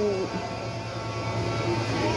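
A steady low hum with faint background music under it; a woman's voice trails off at the start.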